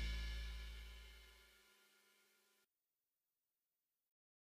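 The final chord of a rock song, electric guitar with cymbals, ringing out and dying away by about a second in.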